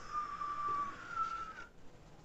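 A high, steady whistle-like tone lasting nearly two seconds, stepping a little higher about a second in, used as a sound effect as the big fish spits Jonah out.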